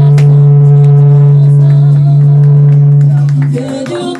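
Mariachi band playing live, led by one long low note held for about three and a half seconds before the music changes near the end.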